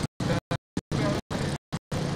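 A voice speaking, broken into short bursts by repeated dropouts to silence.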